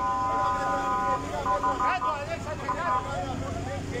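A vehicle horn sounding in one long blast about a second long, then in shorter honks, over people's voices shouting.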